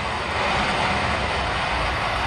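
A steady roaring rush with a low rumble beneath, the sound of a blazing fire played over a venue's sound system.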